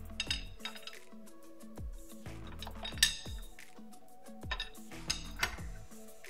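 Open-end wrench clinking against a metal 90-degree fitting as it is turned and tightened: a handful of sharp, irregular metallic clinks, the loudest about three seconds in, over steady background music.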